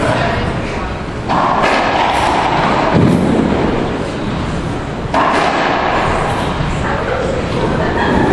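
Racquetball thuds and bangs echoing in a closed racquetball court: two sudden loud bangs, a little over a second in and about five seconds in, each ringing on in the room, with a duller thud between them.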